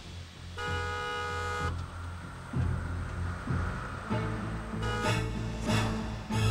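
Dramatic background music with a vehicle horn blaring for about a second, starting just after the beginning. Near the end come several more short, loud horn-like blasts.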